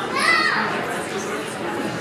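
Many people chatting at once in a large hall. About a quarter of a second in, one brief high-pitched voice rises and falls over the murmur.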